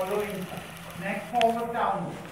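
A person's voice speaking in short phrases, the words not made out.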